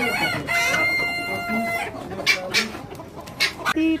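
A rooster crowing once, a long held call starting about half a second in and lasting just over a second, among clucking chickens. A couple of sharp knocks follow.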